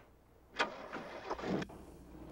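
A car driving along a dirt road. A sudden rush of noise comes about half a second in, then the engine runs with a low steady rumble.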